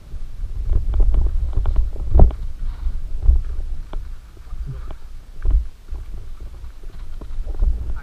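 Muffled on-bike camera audio of a mountain bike riding down a rough dirt singletrack: a steady low rumble with irregular rattles and knocks from the bike and camera mount over bumps, and heavier thumps about two, three and five and a half seconds in.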